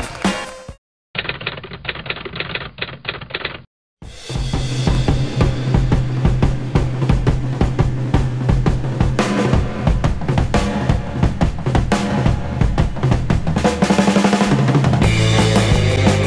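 Background music with a heavy drum beat. Near the start it cuts out twice around a short muffled stretch, then comes back in full with a steady bass line from about four seconds in.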